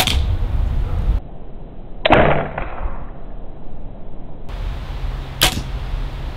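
A 60-lb compound bow being shot three times: three sharp, sudden snaps of the string releasing and the arrow flying, near the start, about two seconds in (the loudest, with a brief ring) and near the end.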